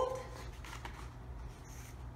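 Sheet of construction paper being folded and pressed flat against a countertop: faint, soft rustling over a low steady hum.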